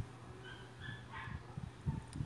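Faint, short, high-pitched animal whines, several in quick succession in the first half, with a few soft low thumps.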